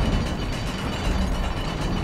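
A steady low rumble with hiss and a faint high hum, with no clear beat or melody.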